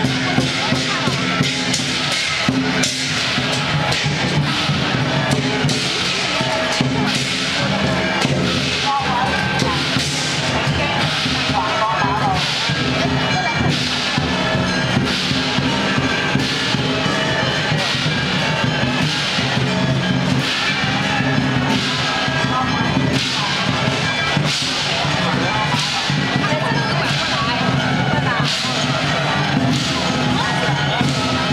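Chinese lion-dance percussion playing: drum beats with regular cymbal crashes and ringing gong tones, over crowd chatter.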